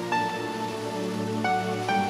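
Background music: a slow, calm instrumental piece of held chords, with a few long melody notes sustained over them.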